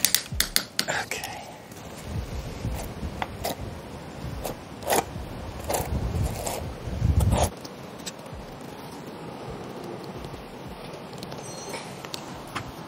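Trowel scraping squeezed-out thinset mortar off the edge of quartz pavers in a series of short strokes, after a few sharp clicks in the first second.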